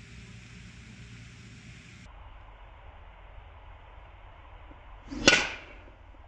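A driver striking a teed golf ball on a full swing: one sharp, loud hit a little over five seconds in, with a brief swish of the club just before it.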